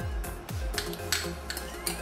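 A metal utensil scraping and clinking against the inside of a ceramic mug as thick sauce is scraped out onto a plate, with background music under it.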